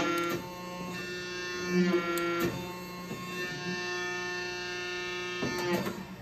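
Hydraulic press power unit running with a steady hum and whine, marked by a few clicks, while the press pressure is let down.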